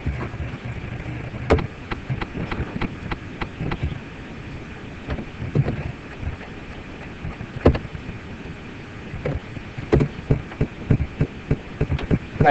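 Irregular clicks and knocks of a computer keyboard and mouse being worked, coming in clusters, over a low steady rumble of room noise.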